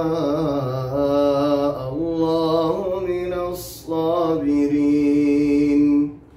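A man reciting the Quran in a melodic chanted style, drawing out long notes with pitch glides, pausing briefly for breath about two and four seconds in, and ending on a long held note.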